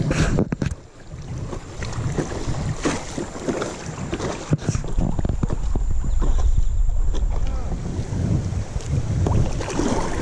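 River current rushing around a stand-up paddle board, with wind rumbling on the action camera's microphone and a few sharp knocks and splashes of the paddle, the loudest right at the start.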